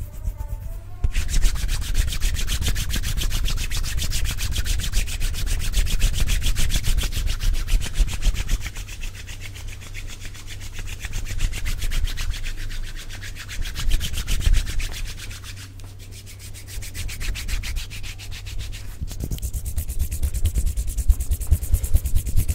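Hands rubbing together right up against a Blue Yeti microphone: fast back-and-forth skin-on-skin friction that starts about a second in, eases off twice and picks up again.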